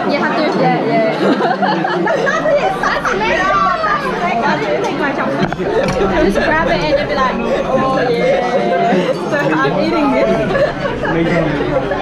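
Several women talking over one another and laughing, with general chatter in a large room behind them.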